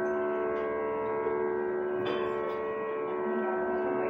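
Steady sruti drone: several pitches held unchanging as the tonal reference for Carnatic music. A brief rustle or knock is heard about two seconds in.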